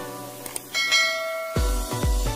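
A notification-bell chime sound effect rings once, about three-quarters of a second in, with a cluster of high bright tones that fade within under a second. About a second and a half in, electronic dance music with a heavy, pounding bass beat starts.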